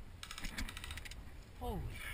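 Airsoft electric gun firing a short full-auto burst, a fast even rattle of about fifteen shots a second lasting under a second, followed by a voice exclaiming near the end.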